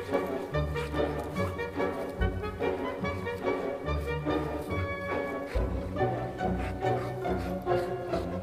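Background music with a bass line and layered melody.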